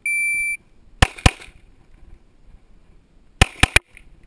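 A single electronic beep lasting about half a second, then a Glock 17 9 mm pistol fired twice in quick succession, a double tap, about a second in. About two seconds later comes a rapid string of three more shots.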